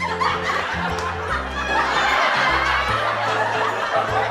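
Laughter throughout, over background music with a steady, stepping bass line.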